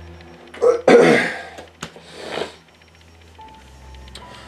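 A man's loud, breathy vocal outburst about a second in, then a softer breath a second later. A faint steady musical tone begins near the end.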